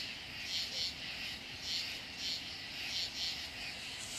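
A chorus of night insects calling outdoors, their rasping calls coming in short overlapping pulses about twice a second.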